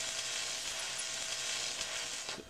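Sound effect for an animated title card: a steady hiss with a faint held tone beneath it.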